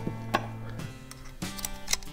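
A few sharp clicks as hands work the blade and clamp on the head of a Bauer 20V oscillating multi-tool, over background music with steady held notes.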